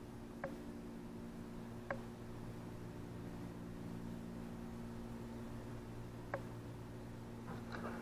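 Quiet steady low hum with three faint, short clicks: about half a second, two seconds and six seconds in.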